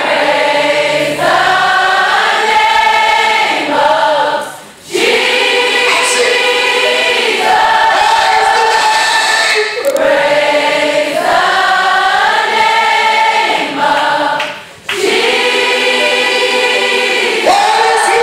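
Congregation of girls and women singing a gospel worship chorus together, long held phrases with no clear instruments. The same line comes round twice, each time after a brief dip in the singing.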